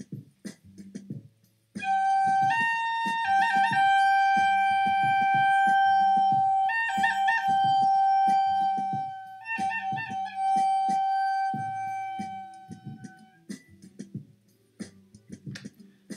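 Side-blown wooden flute playing a slow melody that starts about two seconds in: long held notes, each broken by quick trills and grace notes, with the last long note fading out after about thirteen seconds.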